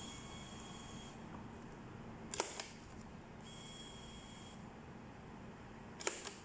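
Supvan LP5120M thermal transfer label printer feeding and printing tape: two spells of faint high motor whine about a second each, with a sharp click in between.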